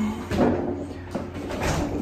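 Refrigerator door opened and a plastic milk jug lifted out, with a few short knocks and clunks.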